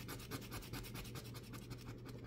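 Metal dog tag scraping the coating off a lottery scratch ticket in quick, faint, even strokes, over a low steady hum.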